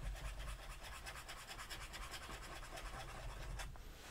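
Fountain pen nib scratching faintly on paper in a quick, even run of strokes as it draws continuous loops, a test of how well the Garant Silka's nib and feed keep up a sustained ink flow.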